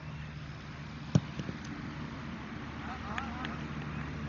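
A football struck hard by a player's boot about a second in: a single sharp thud. Players' shouts follow near the end over a steady low hum.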